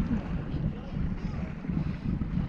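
Wind buffeting the microphone aboard a small sailboat under sail, a steady uneven rumble, with the wash of choppy water around the boat.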